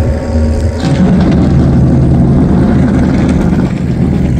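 A car engine running, growing louder about a second in and then holding steady, over a constant low rumble.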